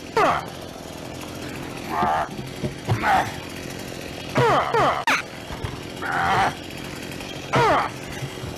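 A knife stabbing into a plastic five-gallon bucket, mixed with short pitched vocal-like cries that swoop down in pitch or waver, repeated several times, and one sharp knock about five seconds in.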